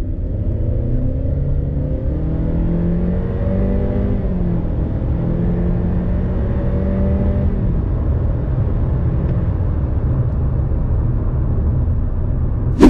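Honda Civic RS Turbo's 1.5-litre turbocharged four-cylinder engine under full-throttle acceleration, heard from inside the cabin. Its note rises in pitch for about four seconds, then holds at high revs while the CVT keeps the engine speed steady as the car gathers speed. About seven or eight seconds in the engine note fades as the throttle is eased, leaving low road and tyre rumble.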